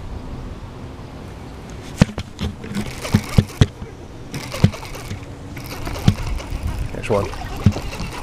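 A handful of sharp knocks and thumps, about seven spread unevenly from about two seconds in, over a steady wash of wind and water.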